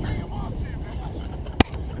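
Low rumble of wind and handling on a harness-mounted action camera's microphone, with faint voices in the first second. One sharp click about one and a half seconds in.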